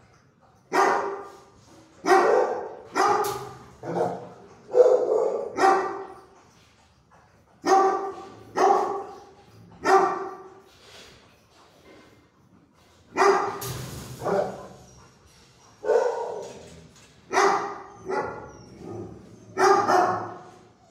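A dog barking repeatedly in a kennel, about fifteen barks at roughly one a second with a short pause midway, each bark echoing briefly.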